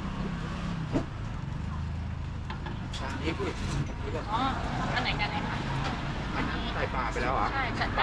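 Street traffic: a steady low rumble of vehicle engines, with voices talking from about halfway through and a single click about a second in.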